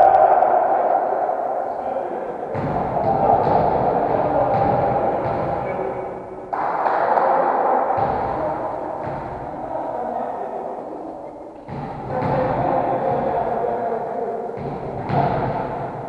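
Echoing sports-hall din: indistinct voices with a scattering of sharp thuds, about one a second.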